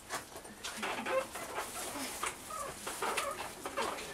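Short, scattered bird-like animal calls and chirps, several a second, with a few clicks among them.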